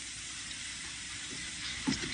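Steady, even hiss: the background noise of an old film soundtrack.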